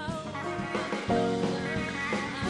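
Live band music led by a semi-hollow electric guitar, with sustained wavering notes over drums, getting louder about a second in.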